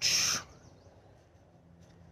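A man's short breath through the mouth, a brief hiss of air at the start, then quiet with faint high chirping.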